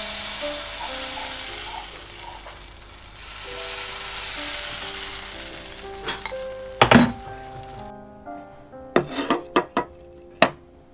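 Batter sizzling as it fries in a hot steel wok, a steady hiss that dips briefly around three seconds and cuts off suddenly about eight seconds in. A couple of sharp knocks come near seven seconds, and a few light clicks near the end, over background music.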